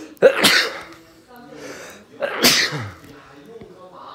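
A person sneezing twice, about two seconds apart, each a loud sudden burst.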